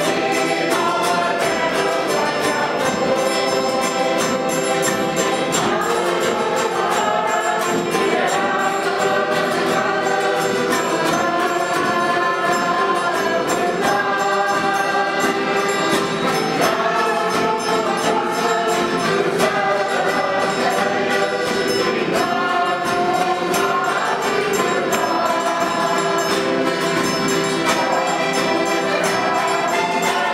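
A choir singing a Catholic hymn, the voices continuing without a break.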